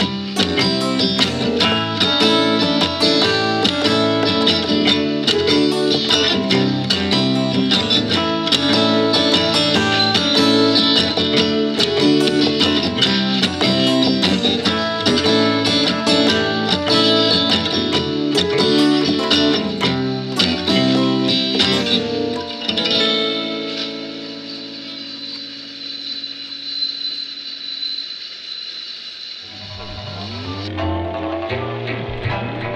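Surf-rock home demo: acoustic guitar run through GarageBand amp and effects-pedal simulations, played over a programmed GarageBand drum track. About three-quarters of the way through, the drums stop and the guitar notes ring out and fade as the track ends.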